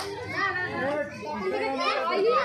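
Children and adults talking and calling out over one another, with high children's voices.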